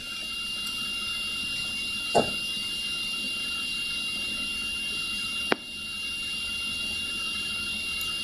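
Steady background hiss with a thin, constant high whine: the electronic noise of the recording setup between spoken phrases. A soft knock comes about two seconds in and a sharp click about five and a half seconds in.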